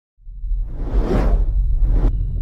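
Whoosh sound effect from a news channel's logo intro. It starts about a quarter second in over a deep low rumble and swells and fades about a second in.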